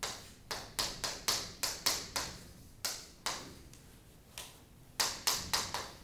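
Chalk writing on a blackboard: a quick, irregular run of sharp taps and short strokes, easing off for about a second and a half in the middle, then picking up again near the end.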